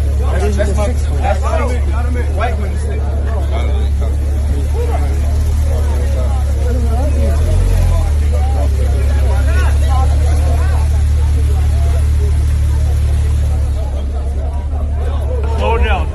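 A sports car's engine running close by at low speed: a steady low rumble, with crowd voices and chatter over it.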